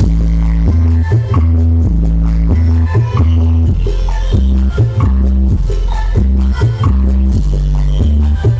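Electronic dance music played loud through a large outdoor concert sound system. A deep, heavy bass line comes in right at the start, stepping between held notes in a steady rhythm.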